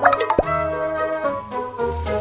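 Light, bouncy background music with a cartoon 'plop' sound effect right at the start: a quick swoop that drops sharply in pitch.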